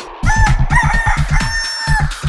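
A rooster crowing cock-a-doodle-doo, a call of several short notes ending on one long held note, laid over electronic dance music with a steady beat.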